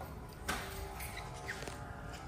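Aston Martin Lagonda's power radio antenna retracting after the radio is switched off: a click about half a second in, then a faint steady motor whine.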